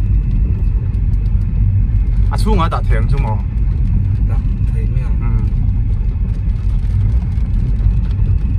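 Steady low rumble of a car's engine and tyres heard from inside the cabin while driving on a wet street. A voice speaks briefly about two seconds in.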